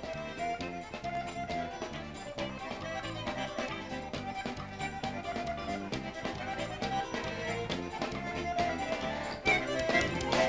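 Live forró band playing an instrumental break led by the accordion, over a steady beat of drums and a repeating bass line, with a louder accent near the end.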